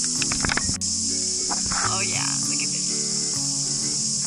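A steady, high-pitched insect chorus that does not let up, heard over background music, with a few sharp clicks in the first second.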